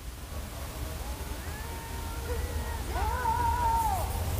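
A young man singing a line in Korean from the played video's audio. The singing starts about a second in and ends on a long held note near the end, over a low steady hum.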